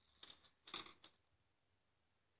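Scissors snipping through knitting yarn: a faint click, then a louder sharp snip a little under a second in.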